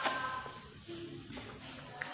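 Faint mouth sounds of eating soft, springy jelly pudding, with a sharp wet smack or bite right at the start and another at the end. A faint held hum sounds briefly near the start and again about a second in.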